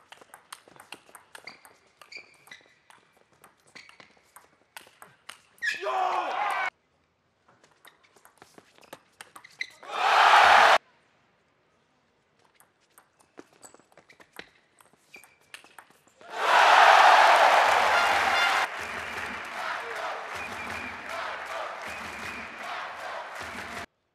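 Table tennis rallies: the ball clicking back and forth between bats and table in a large hall. Three bursts of crowd cheering come after won points, each cut off sharply. Near the end a long cheer carries on with low thumps about once a second.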